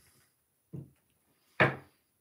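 A man's short low hum, then a sudden exclaimed "oh" near the end, with quiet between; no card handling stands out.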